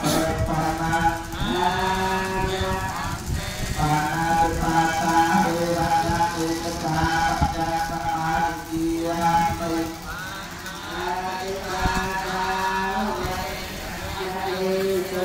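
Theravada Buddhist chanting, sung on a steady pitch in long held phrases of a couple of seconds each, with short breath breaks between them.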